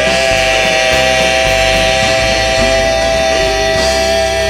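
Men's vocal group singing with instrumental accompaniment, holding one long chord over a stepping bass line.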